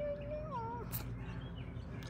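A single drawn-out, high, wavering vocal call that holds its pitch and then slides down and fades within the first second.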